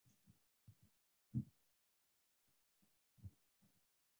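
Chalk writing on a blackboard, heard only as a few faint, soft knocks as the chalk strikes the board, the loudest about a second and a half in; otherwise near silence.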